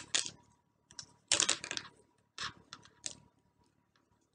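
Brittle shell of a fresh sour tamarind pod cracking and crackling as it is peeled off by hand. It comes in short, irregular bursts, the longest about a second and a half in.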